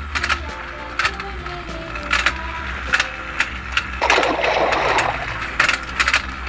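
Toy fishing game running: its motorised turning pond clicks over and over under a simple melody, with a short rustle about four seconds in.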